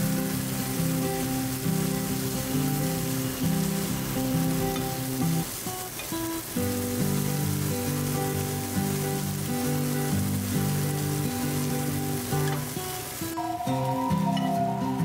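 Thin slices of meat sizzling as they fry in a nonstick pan, a steady hiss that stops shortly before the end, under background music with a stepping melody.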